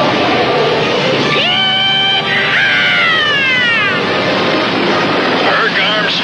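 Cartoon sound effect of a suit-mounted jet pack igniting and firing: a steady rushing roar, with a whine that rises and holds about a second and a half in, then slides downward.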